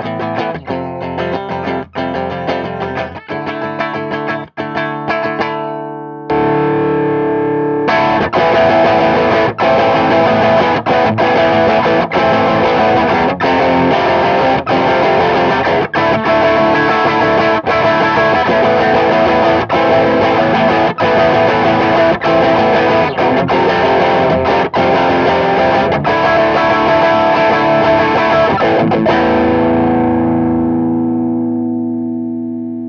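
Fender Stratocaster played through an Ulbrick 12AXE overdrive pedal into a clean 50-watt single-channel amp head and a closed-back 2x12 cab loaded with Vintage 30s, playing a heavy overdriven ninth-chord figure with the harmonics jumping around. For about six seconds it plays short chord stabs and then holds a chord. From about eight seconds a louder passage of chords follows, struck roughly once a second, and it rings out at the end.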